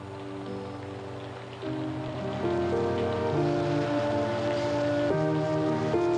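Soft background music of sustained, slowly changing chords that swells about a second and a half in, over a steady hiss of rain.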